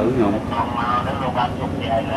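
Voices talking, over a steady low background rumble.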